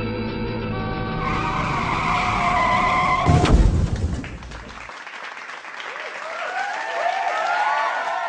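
Rock music intro that ends with a loud hit about three and a half seconds in. After it comes a tyre-screech skidding sound effect, several overlapping squealing glides that grow louder toward the end.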